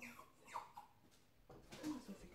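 Two faint, high-pitched mews from a kitten, each falling in pitch, about half a second apart, followed by a brief indistinct rustle near the end.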